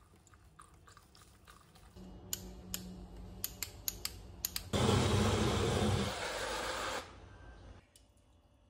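Portable personal blender running for about two seconds, blending banana, milk and protein powder into a shake. It is preceded by a few sharp clicks, and its whirring stops suddenly about a second before the end.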